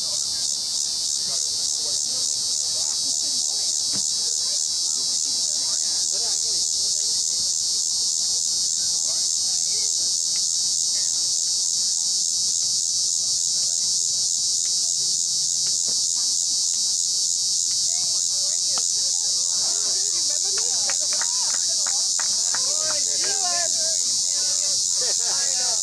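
Steady, high-pitched insect chorus with a fast, even pulsing texture.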